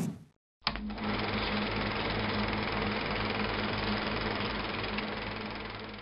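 Film projector sound effect: a steady mechanical clatter over a low hum, starting with a click and fading out near the end. A short whoosh comes right at the start.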